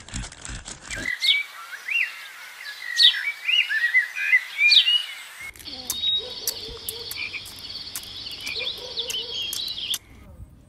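Dry leaves crackling for about a second, then birds chirping with short rising and falling whistles. From about five seconds in, a wetland chorus of frogs and insects takes over, with a steady high trill and warbling croaks.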